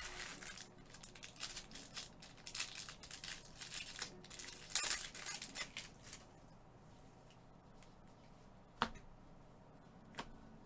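Crinkling and rustling of wrapped trading-card packs being handled and stacked, in quick uneven bursts for about six seconds before it dies down. One sharp click near the end.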